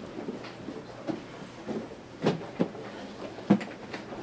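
Cardboard packages being handled at a counter: several dull knocks and thumps. The loudest come a little past two seconds in and about three and a half seconds in.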